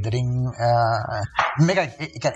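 Only speech: men's voices in conversation, with one drawn-out vocal sound near the middle.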